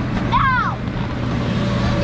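Steady drone of the electric air blower that keeps an inflatable bounce house inflated, with a child's high squeal about half a second in and other children's voices over it.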